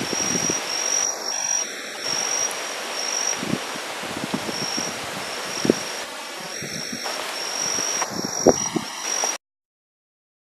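Wind gusting over the microphone, with a high steady insect call running underneath and a few light clicks; the sound cuts off abruptly near the end.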